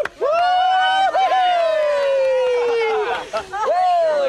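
Team cheering a contestant out: one long, high shout held for over two seconds and slowly falling in pitch, then more shouting near the end.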